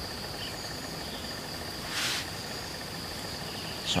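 Insects trilling steadily in the forest, one high continuous tone with a fainter pulsing chirp underneath. A brief rustle-like burst of noise about two seconds in.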